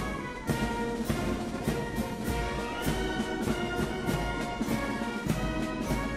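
Brass band music with a steady drum beat and sustained brass chords.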